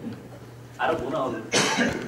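A man's cough: a short voiced sound about a second in, then one harsh cough near the end, in a large hall.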